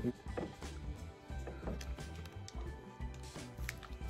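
Faint crinkling and clicking of foil Pokémon booster packs and cards being handled, over quiet background music.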